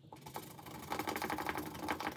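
Scratch-off sticker on a paper savings-challenge card being scratched off in rapid, even strokes, building up about half a second in.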